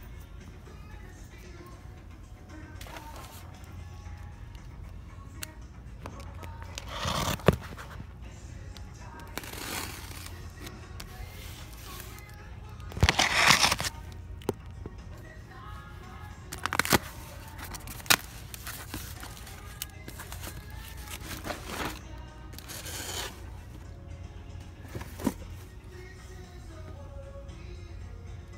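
Faint background music plays throughout, broken by several short, loud rustles and scrapes of cardboard and packaging being handled, the loudest about halfway through.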